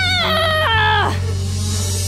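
A girl's voice screaming in frustration. The held scream breaks a moment in into a wavering cry that falls in steps and dies away about a second in. Background music plays underneath.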